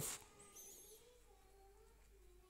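Near silence: faint room tone with a few faint wavering tones in the background.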